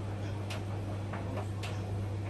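A Beko WTK washing machine and an Indesit IDV75 vented tumble dryer running side by side. A steady low hum sits under a few irregular light clicks and taps from the tumbling laundry.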